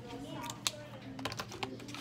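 A handful of sharp, light clicks and taps of small hard objects: one about two-thirds of a second in, then several in quick succession in the second half, with faint voices underneath.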